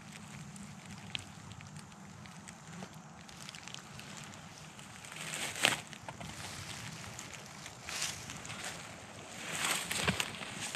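A few footsteps crunching and rustling in dry pine needles and leaves, the loudest about halfway through and again just before the end, over a faint steady outdoor hiss with small crackles.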